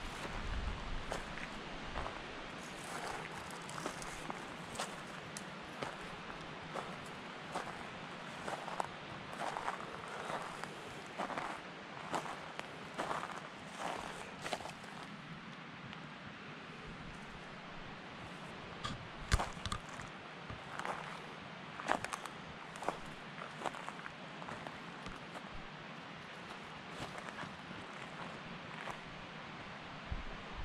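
Footsteps on the forest floor, with a run of small cracks and crunches from twigs and litter underfoot: frequent in the first half, sparser later, with a few sharper snaps around the middle.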